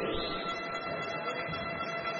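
Music from the arena's public-address system in a large sports hall: several sustained tones held together, with a rising sweep at the start.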